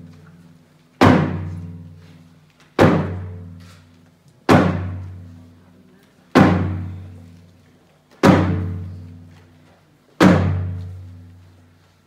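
Large frame drum beaten in a slow, steady beat: six single strikes about two seconds apart, each one a deep boom that rings out and dies away before the next.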